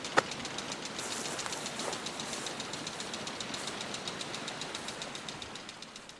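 A single sharp click just after the start, then steady outdoor background hiss with a faint, fast, even ticking running through it.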